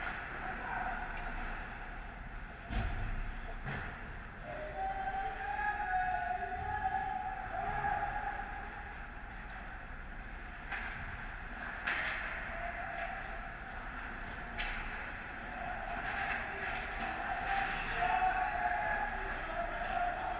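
Ice hockey rink sound during play: skates scraping on the ice under a steady hum, a few sharp clacks of stick and puck, and distant voices calling out across the ice.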